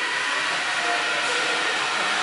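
Steady, even hiss of café background noise with a few faint steady tones, holding one level throughout.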